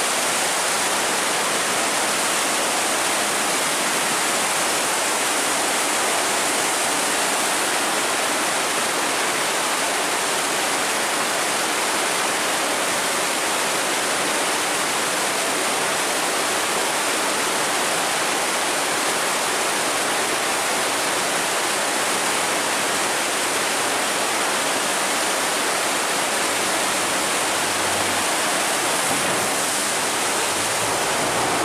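Fast water rushing through an open sluice gate: a steady, dense roar with no breaks. A faint low engine hum comes in near the end.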